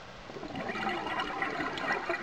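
A burst of gas bubbles gurgling up past the underwater camera from a scuba diver's breathing gear, starting about half a second in and lasting about a second and a half, over steady underwater background noise.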